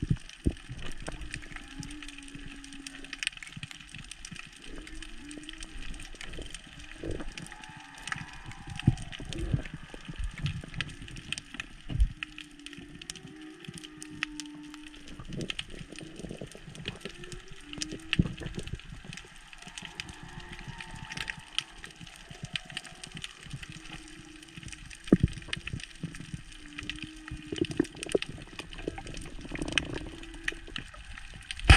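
Underwater sound picked up by a camera in its housing: a steady bed of scattered sharp clicks and crackles, with short, wavering low hums coming and going every few seconds.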